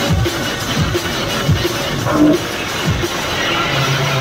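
Loud neurofunk drum and bass DJ set playing over a club sound system, with heavy kick drums and bass hits.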